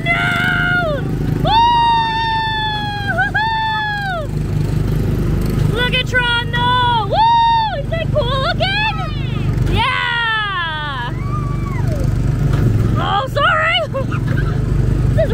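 Small gasoline engine of a Tomorrowland Speedway ride car running steadily under the drivers. High-pitched wordless vocal squeals and whoops, some held long and some gliding down, ring out over it throughout.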